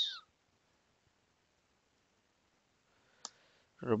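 Near silence broken by a single computer mouse click about three seconds in.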